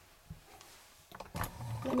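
Quiet room tone for about a second, then a short knock and handling noise as tarot cards are moved on a cloth-covered table, just before speech begins.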